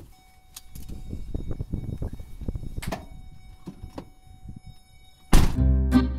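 Vehicle-cab handling sounds: a click, then rustling and a sharp thunk about three seconds in, over a steady high tone. Loud plucked-string music cuts in near the end.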